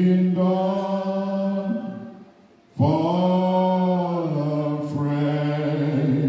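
A man singing a slow hymn line unaccompanied into a microphone, holding long steady notes. The voice breaks off for a breath about two seconds in, then comes back on a new long note.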